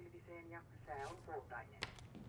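Faint, thin-sounding talk from a small portable radio, muffled as through a tiny speaker. A single sharp click comes near the end.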